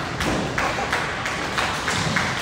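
Bowling alley din: a steady run of thuds and knocks from balls and pins on the lanes.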